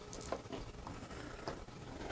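A few faint, light clicks of small metal hardware (screws and T-nuts) being picked up and handled on a silicone work mat.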